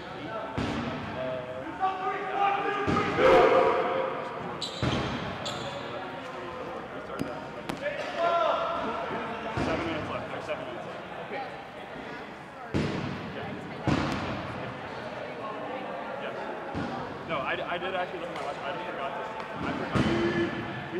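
Dodgeballs bouncing on a hardwood gym floor, a scattered thud every few seconds, under players' voices and calls in the large gym.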